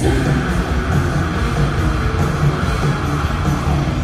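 A live rock band playing loud and steady: electric guitars with bass and drums, with no singing.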